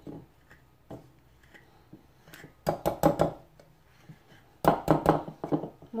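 Wire balloon whisk beating eggs into flour in a clay bowl, its wires clicking and knocking against the bowl in two quick runs of strokes, one about halfway through and a louder one near the end.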